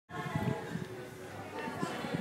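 Bar-room chatter of several voices, with sustained musical notes held steadily in the background.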